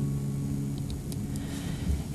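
An acoustic guitar chord ringing out and slowly fading, with no new strum.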